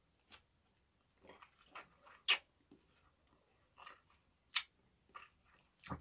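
Faint mouth sounds of a man eating a sherbet-dipped strawberry ice lolly: quiet chewing and sucking broken by short sharp clicks, the loudest about two seconds in and another about four and a half seconds in.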